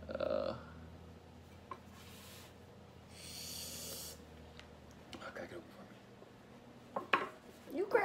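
Quiet room with a short murmured vocal sound at the start, a couple of light taps, and a breathy hiss about three seconds in.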